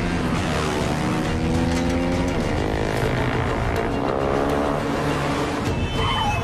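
Motorcycle engine revving hard, its pitch climbing repeatedly as it runs up through the gears, over a loud film score.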